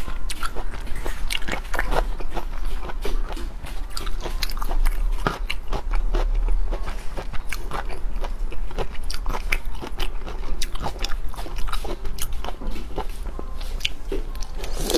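Close-miked biting and chewing of a whole shell-on prawn, the shell crunching in rapid, irregular clicks throughout, with a steady low hum underneath.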